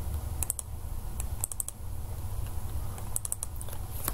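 Computer keyboard keys clicking in a few short clusters, about half a second in, around a second and a half, and again a little after three seconds, over a steady low hum.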